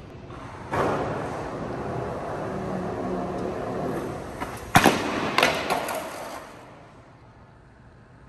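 Skateboard wheels rolling on a hard, smooth floor, then a sharp loud slam a little past halfway as the skater comes down at the bottom of a 15-stair set and bails. Two more clattering impacts follow, then the board rolls away and fades out.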